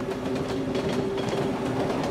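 Subway train running on the rails, a steady rumble with rail clatter.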